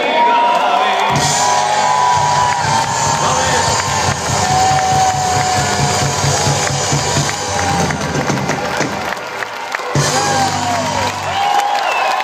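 Live concert music through a festival PA with a steady bass-drum beat, under a large crowd cheering and shouting. The beat kicks in about a second in, breaks off near ten seconds, comes back briefly and stops again.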